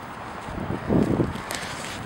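Footsteps and rustling on dry grass and dirt, with a louder, dull rustle about a second in.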